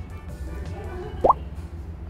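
Background music, with one short, quickly rising pop about a second in that stands out as the loudest sound.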